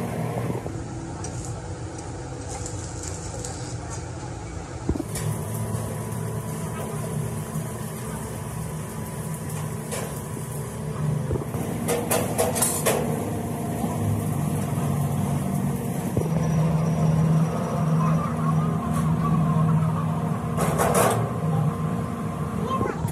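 Workshop noise: steel parts of a corn sheller being handled and fitted, with metal knocks and clanks, a cluster of them around the middle and another near the end, over a steady low engine-like hum.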